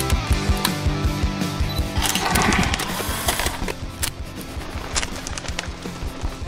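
Background music with a steady beat, with a brief swell of rushing noise about two seconds in.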